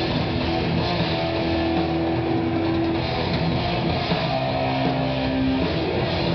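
Live heavy metal band playing: electric guitars hold long notes over bass and a dense, steady wall of band sound, with the held note dropping lower near the end.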